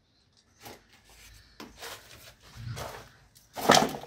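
Irregular scuffs, knocks and light crunches of footsteps and handling on a debris-strewn floor, with a louder sharp scrape near the end.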